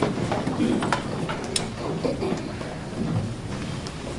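Courtroom audience getting up from wooden benches: a steady mass of shuffling, rustling clothing and movement over a low rumble, with a few sharp knocks.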